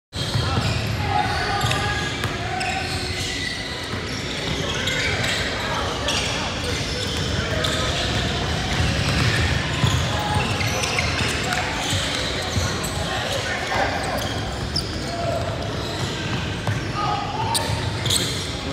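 Basketball bouncing on a hardwood gym floor during play, with scattered sharp strikes. Voices of players and onlookers mix in, and the sound echoes in the gym.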